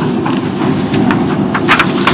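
A steady low hum of room noise, with a few faint small clicks and rustles scattered through it.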